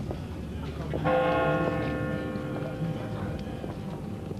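A church bell struck once about a second in, ringing out with many steady tones and slowly fading, over the murmur of a crowd talking.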